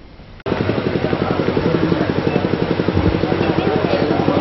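A small engine running steadily with a fast, even chug of about a dozen beats a second. It cuts in abruptly about half a second in.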